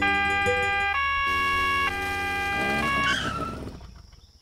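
Police two-tone siren, alternating between two notes about once a second, over a low engine hum; it fades out near the end as the car is pulled over.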